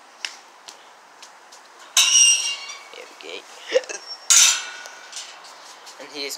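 Two loud rattling metallic scrapes, the first about two seconds in and the second just after four seconds, with light clicks and knocks between them.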